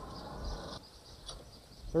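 Coal forge fire with air rushing softly through it for the first second or so, then dropping away, over insects chirring steadily.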